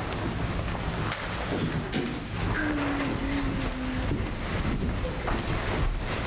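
Low rumbling noise with a few faint knocks scattered through it, as people move about the room; there is no singing yet.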